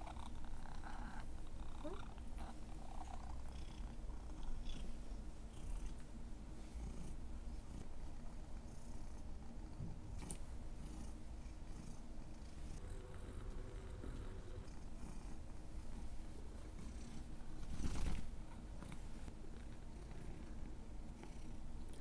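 Domestic cat purring steadily while it is stroked and its ears are rubbed, with soft rustling of fur under the hands. A brief, louder rustle comes about eighteen seconds in.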